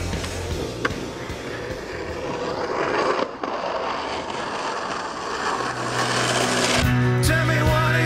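Skateboard wheels rolling down a steep concrete bank, a steady rolling noise that grows louder and then drops off after about three seconds, with a sharp click near the start. Music with a steady bass line comes back in the second half, with singing near the end.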